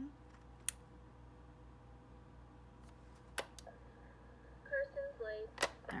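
A few sharp, separate plastic clicks as the power switch on the underside of a BIGmack switch is turned on and the unit is handled. A brief hum of a voice comes near the end.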